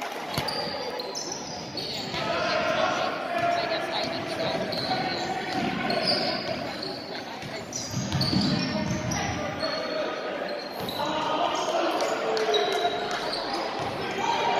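A basketball bouncing on a hardwood gym floor as it is dribbled, with spectators and players talking and calling out in the echoing gym.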